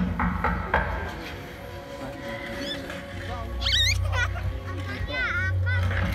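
Film soundtrack played over open-air cinema loudspeakers: background music with a low steady hum, a few knocks at the start, and high squealing cries around the middle and again near the end.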